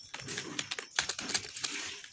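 Keystrokes on a computer keyboard: a handful of separate key clicks at an uneven pace as code is typed.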